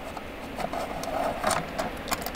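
A hex key turning a small screw out of a stainless steel bracket cover, giving a faint metallic scraping with a few small clicks.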